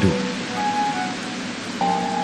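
Steady rain hiss with soft background music of held notes; a few new sustained notes come in near the end.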